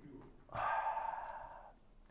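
A man's single breathy sigh, lasting about a second, starting about half a second in.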